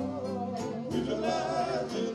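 Male soul vocal group singing live in the Motown style, the lead voice over backing harmonies, with a live band and steady drum beats behind.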